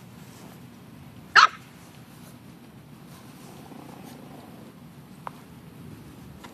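An English bulldog puppy gives one short, high-pitched bark about a second and a half in, during rough play.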